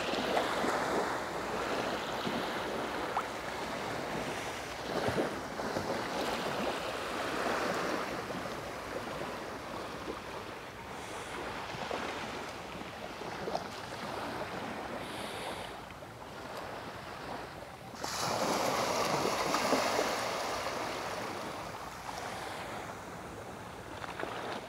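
Small sea waves washing up on a sandy beach, in a steady hiss with irregular surges, the strongest lasting a couple of seconds about three-quarters of the way through.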